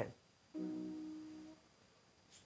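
A piano chord struck once about half a second in and left to ring, fading away over about a second: the accompanist's cue before the singer comes in.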